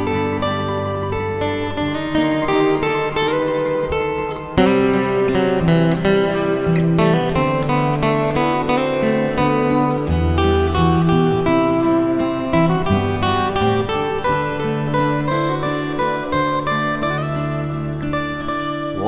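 Instrumental break in an acoustic folk song: strummed acoustic guitar and a bass line under a fast picked mandolin lead, with the band playing fuller about four and a half seconds in.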